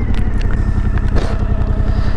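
Motorcycle engine running steadily at low revs, with a few light clicks.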